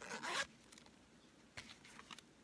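Zipper of a fabric cosmetic bag pulled open in one quick run, followed by a couple of short, fainter rasps near the end.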